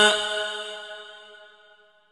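A male Quran reciter's long held note in melodic mujawwad style stops right at the start, and its echo rings on at the same pitch, fading away over about two seconds into silence.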